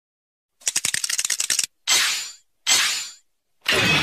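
Kamen Rider Build Full Bottle shake sound effect: a fast rattle of sharp clicks for about a second, then two separate hissing, shimmering hits, each fading out over about half a second. A loud voice or music starts just before the end.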